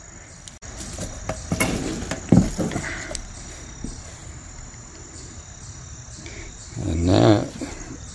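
Insects chirring steadily in a thin high band outdoors, with a few soft handling knocks about two seconds in.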